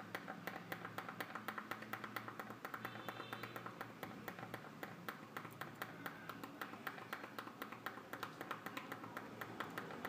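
Small tactile push button on an LED dimmer board clicked over and over, about four light clicks a second. Each press steps the dimmer's PWM duty-cycle setting up by one.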